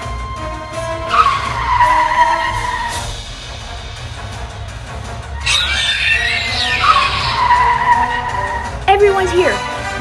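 Two velociraptor screeches, each sliding down in pitch and lasting about two seconds, over background music.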